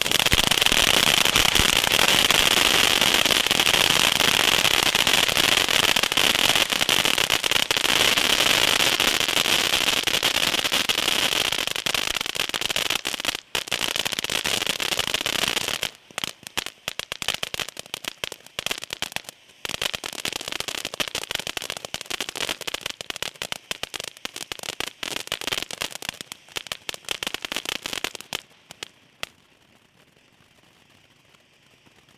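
Small Santorin ground fountain firework spraying sparks with a loud, steady hiss for about sixteen seconds. It then turns into a quieter run of rapid, irregular crackling that dies away near the end.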